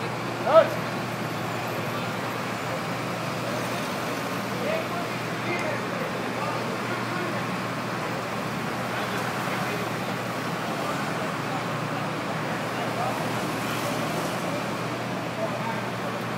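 Steady engine and traffic rumble from a lorry-mounted crane running at a busy city street, with a low steady hum. A short burst of voice comes just under a second in, and faint voices are heard now and then.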